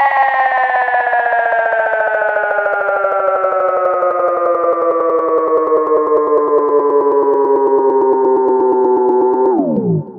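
Electronic music ending on a lone synthesizer note, rich in overtones, sliding slowly down in pitch with no beat under it. Near the end it plunges sharply downward and trails off in fading echoes.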